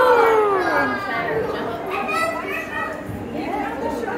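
Background chatter of visitors and children's voices, with one high, drawn-out voice that rises and falls in the first second.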